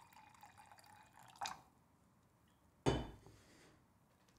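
Liquid poured from a glass teapot into a mug, a thin trickling stream that stops about a second and a half in. A single sharp knock just before three seconds in as the teapot is set down.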